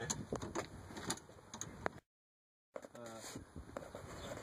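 Scattered short metal clicks and knocks of a wrench working a stubborn fuel-filter fitting that is hard to turn. The sound cuts out completely for under a second about halfway.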